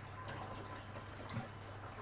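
A stream of water falling into an aquarium and splashing steadily at the surface, with a low steady hum underneath.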